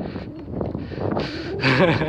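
A man's voice: short vocal sounds in the second half, over faint outdoor background noise.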